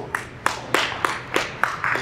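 Scattered hand claps from a small audience: several separate claps spread unevenly through the moment, not a dense round of applause.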